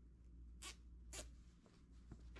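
A plastic zip tie being pulled through its ratchet: two brief strokes about half a second apart, over a faint low hum.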